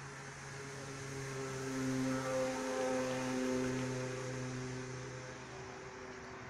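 A motor vehicle passing by on the road, its engine hum swelling over a couple of seconds and then fading away.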